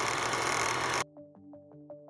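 Old-film projector rattle sound effect, a dense steady whirring clatter that cuts off suddenly about a second in. Then comes quiet outro music of short plucked notes, about six a second.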